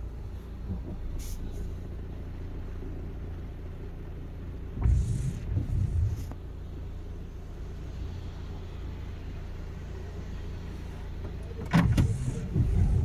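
Steady low rumble of a car heard from inside the cabin, with a few louder low thumps about five seconds in and a sharp knock just before the end.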